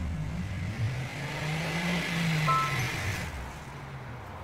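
A car pulls away and drives off: its engine and tyre noise swell about two seconds in, then fade. A short electronic beep sounds about two and a half seconds in.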